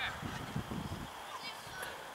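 Shouting on a youth football pitch: the tail of a loud, high call at the very start, then faint distant calls over a low rumble, and one brief sharp tap near the end.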